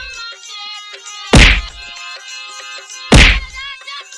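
Two loud whacks of a stick beating, one about a second and a half in and one near the end, over background music with a melody.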